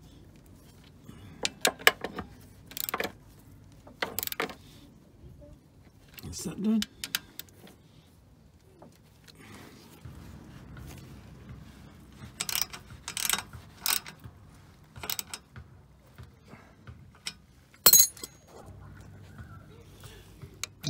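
Scattered metallic clinks and clicks of a socket ratchet and bolts as an exhaust bracket is refitted under a car. There is a run of clicks in the second half and one loud sharp clink near the end.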